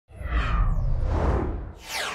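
Logo-animation whoosh sound effects: a loud swoosh over a deep rumble that starts at once and holds for about a second and a half, then a second swish sweeping downward in pitch near the end.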